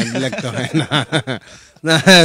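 A man chuckling, a quick run of short ha-ha syllables that trails off about a second and a half in.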